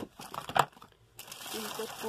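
Cosmetic containers and plastic-wrapped boxes being handled and shifted in a box of products: crinkling plastic wrap and light knocks, with one sharper click about half a second in.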